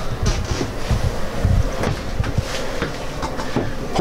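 Irregular low rumbling with scattered knocks and clicks as people move about in a cramped travel-trailer bathroom, with the camera close against them.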